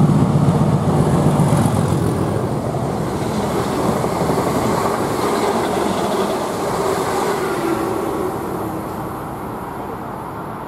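Class 37 diesel locomotive with its English Electric V12 engine working hard as it comes through the station, heaviest in the first couple of seconds. Then the hauled multiple units run past on the rails, and the sound fades over the last two seconds.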